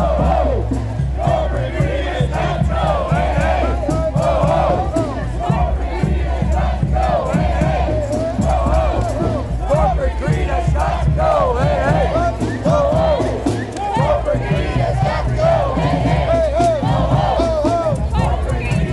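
Large crowd of street marchers, many voices shouting and calling over one another, loud and continuous.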